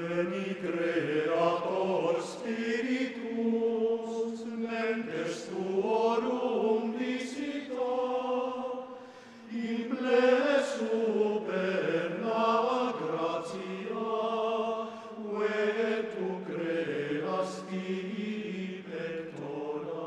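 A choir singing a slow, sustained choral piece, holding long notes that move in steps, with a brief breath pause about halfway through.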